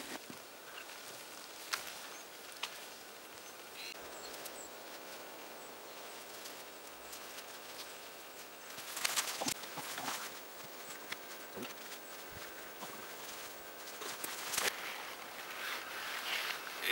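Footsteps on moss and dry fallen spruce branches, with rustling and a few twig cracks, loudest about nine seconds in and again near the end, over faint forest background.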